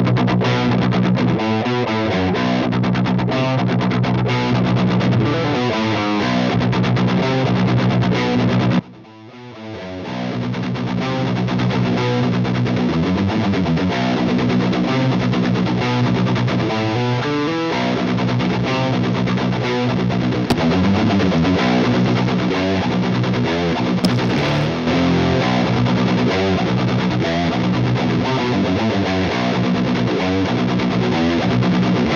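Distorted seven-string electric guitar ringing on through a Void Manufacturing Bonk distortion pedal, its tone shifting in slow sweeps as the pedal's knobs are turned. The sound cuts out sharply about nine seconds in and swells back up over the next second or two.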